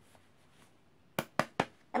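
Three sharp taps, about a fifth of a second apart, from a hand working a clipped pocket knife into a front trouser pocket; near silence before them.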